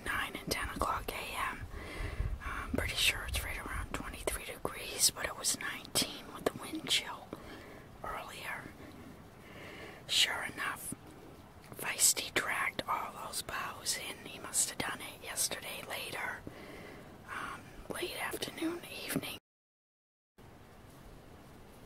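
Quiet whispered speech, broken by soft clicks, with a low rumble on the microphone in the first few seconds; it cuts off abruptly shortly before the end.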